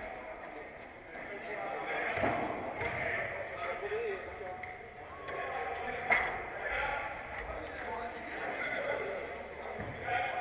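Players' shouts and calls carrying across a large indoor hall, with one sharp knock about six seconds in.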